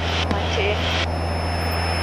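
Cessna 152's four-cylinder piston engine and propeller running steadily at full power in the climb just after takeoff, a constant low drone.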